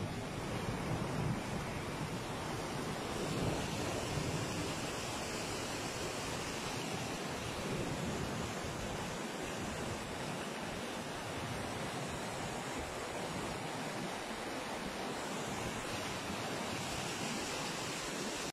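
Muddy floodwater rushing in a torrent over a road: a steady, unbroken rush of water.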